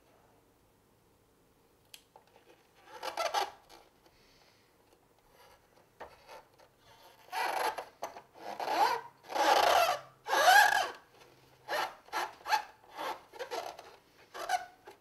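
Fingers rubbing and pressing over the plastic hull of a vintage 1981 Kenner Slave I toy, smoothing down a newly laid sticker: one short stroke about three seconds in, then a run of repeated rubbing strokes in the second half.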